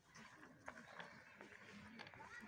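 Near silence: faint outdoor background with a few soft clicks and faint distant voices.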